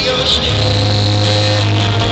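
Live rock band playing in a large hall, with piano, drums and a singing voice over a low note held from about half a second in.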